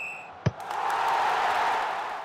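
Sound effects of an animated logo sting. A short high ping fades out, a single sharp hit comes about half a second in, and then a loud rush of noise swells up and holds, beginning to fade near the end.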